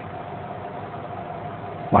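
Steady background hum and hiss with a faint steady high tone running through a pause in a man's speech. His voice comes back right at the end.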